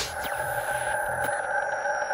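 Synthesized logo-sting sound: a steady electronic drone of a few held tones, with faint ticks and thin falling sweeps high above it.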